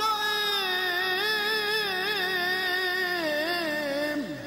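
A single voice singing one long held note of a religious chant, wavering in melismatic ornaments in the second half, then dropping away at the end. A faint steady drone runs underneath.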